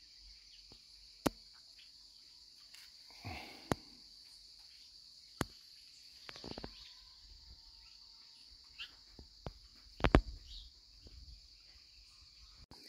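Steady, high-pitched insect trilling, faint and unbroken, with a few sharp clicks and taps scattered through it.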